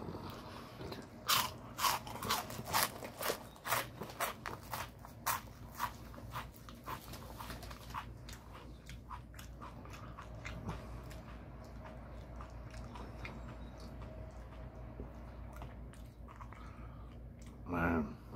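Crunchy onion-ring snack being bitten and chewed close to the microphone: a quick run of sharp crunches through the first half, then quieter chewing.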